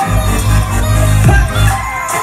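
Loud live pop/R&B song through a club PA, an instrumental stretch with a heavy bass beat and a deep bass hit that slides down in pitch just past the middle.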